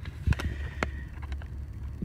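Handling noise as a paper receipt is picked up and held to the camera: a few sharp clicks and light crackles over a low steady rumble inside a car.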